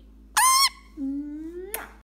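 Indian ringneck parakeet giving one short, loud squawk about a third of a second in.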